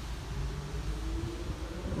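Steady low background rumble with a faint hum that rises slightly in pitch.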